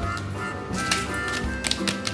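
Background music, with the crackle of plastic Cadbury Dairy Milk wrappers being handled, a few sharp crinkles about a second in and again near the end.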